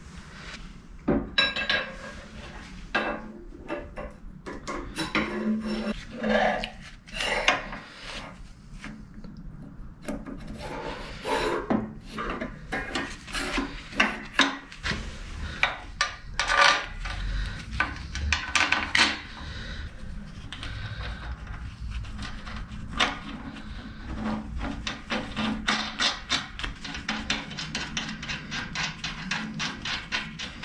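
Steel rods being slid through the locomotive chassis frames and fitted into their bearings: many separate metallic knocks and clicks, with scraping of rod against metal between them.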